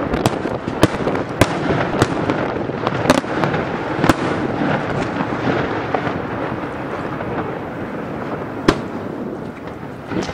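Aerial fireworks display: a string of sharp bangs from bursting shells, about one a second in the first half, over a continuous noisy wash that slowly fades. One last loud bang comes near the end.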